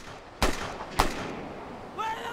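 Sharp cracks from a film soundtrack: a faint one at the start, then two loud ones about half a second apart, the second the loudest, over a steady rushing noise.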